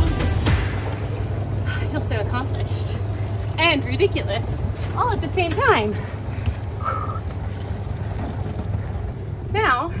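A woman's wordless, swooping exclamations several times over a steady low hum, which is likely the boat's idling engine.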